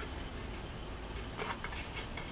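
Faint rubbing and a couple of light taps as hands handle a one-piece styrene plastic lower hull of a 1/16 scale model tank kit, over a low, steady background rumble.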